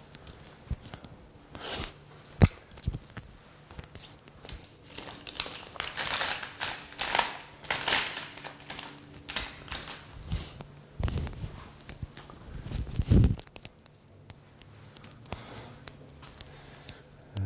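Irregular crinkling and rustling of handled material, densest in the middle, with a sharp click about two and a half seconds in and a heavier thump near the end.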